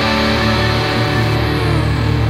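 Rock band playing, with electric guitars and keyboards holding sustained notes over the bass.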